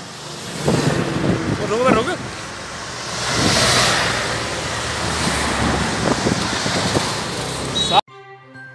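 Road traffic: vehicles, a bus among them, drive past close by, their noise swelling to its loudest about three and a half seconds in. Voices call out briefly about a second or two in.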